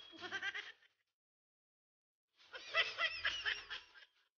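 A faint, wavering, high-pitched voice-like sound in two bursts: a short one at the start and a longer one about two and a half seconds in.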